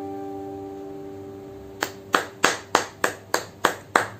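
The last held notes of a song fading out, then hands clapping in a steady run of about three claps a second, starting a little under two seconds in.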